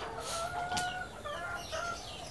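A rooster crowing faintly: one held note lasting under a second, followed by a few short chicken calls.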